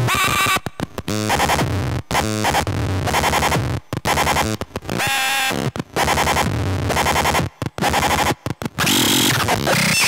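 Circuit-bent VTech Little Smart Tiny Touch Phone sound chip putting out loud, glitchy electronic tones and noise, changing pitch and timbre as its knobs and dial are turned. The sound stutters and cuts out abruptly many times, with a few short pitch glides.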